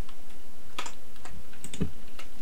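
A handful of separate clicks from a computer keyboard. The sharpest comes just under a second in, with lighter taps after it and a duller knock near the end.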